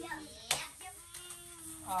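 A single sharp slap about half a second in, like a hand hitting the tabletop, then a child's voice held faintly on one steady note.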